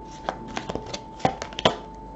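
A deck of tarot cards being handled: a quick string of short card clicks and flicks as cards are slid off the deck, the loudest two in the second half, over a faint steady tone.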